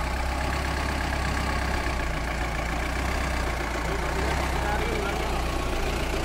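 Mahindra Bolero engine running steadily at low revs as the vehicle crawls along concrete wheel tracks.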